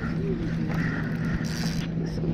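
Spinning reel being wound in as a hooked pinky snapper is played to the jetty, a short rasping whirr of about a second near the middle, over a steady low hum and wind rumble on the microphone.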